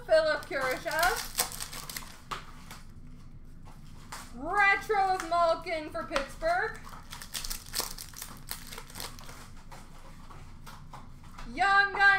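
Hockey card pack wrappers crinkling and cards being handled, in two spells of dense clicks, one about a second in and one from about 7 to 9 seconds. A voice speaks briefly at the start and again in the middle.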